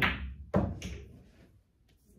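Pool balls clacking on a shot: two sharp clacks about half a second apart, then a few fainter knocks as the balls roll and touch the cushions.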